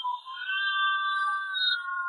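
Several steady, overlapping held musical tones, thin and with no low end: the band's instruments left over in a vocals-only separation of a live metal recording.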